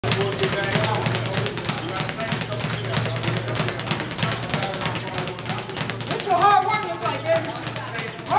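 Speed bag punched in a rapid, steady rhythm, the bag clattering against its wooden rebound platform. Music plays underneath.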